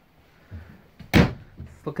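A cabinet door in a travel trailer's kitchen being shut: a soft bump, then one sharp knock about a second in, followed by a few lighter knocks.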